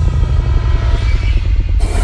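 Background music: a deep, pulsing bass with a tone that falls slowly in pitch, which cuts off near the end.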